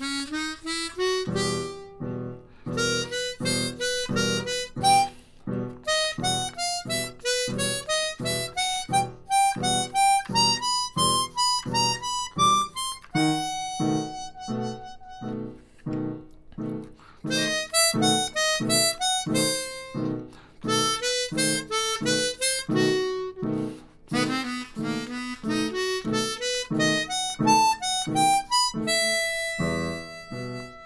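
Chromatic harmonica (Hohner) playing a flowing jazz melody, with slide-button sharps and flats among the notes, over a steady pulsing chord accompaniment.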